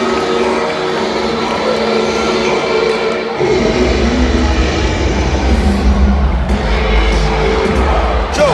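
Loud music over an arena's PA system, with a heavy bass line coming in about three and a half seconds in.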